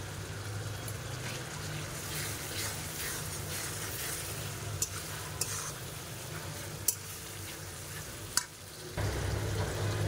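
Turmeric, tomato and green chilli masala sizzling in oil in a steel karahi as it is fried down, stirred with a metal spatula that clicks sharply against the pan four or so times in the second half.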